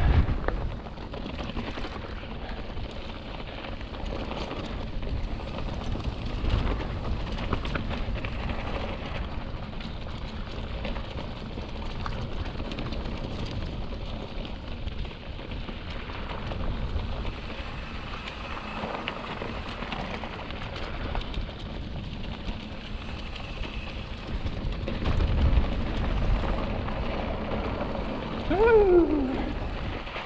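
Hardtail mountain bike rolling down a dry, rough dirt trail: a steady crunch and rattle of tyres over loose ground with scattered sharp ticks, under wind rumble on the camera microphone. A short falling tone sounds near the end.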